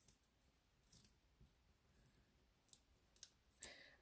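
Near silence with a handful of faint, short clicks and rustles: small foam adhesive dimensionals being peeled from their backing and pressed onto a cardstock circle.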